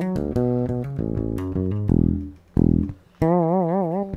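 Fretless electric bass playing a short plucked riff, then a couple of notes sliding down in pitch about halfway through. Near the end comes a high note on the G string at the ninth-fret position, smeared with a wide, wavering vibrato.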